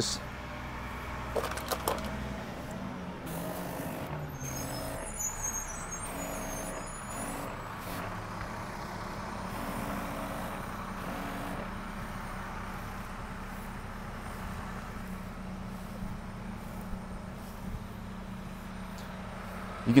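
Garden weed sprayer spraying through a fine mist tip: a soft steady hiss over a low steady hum.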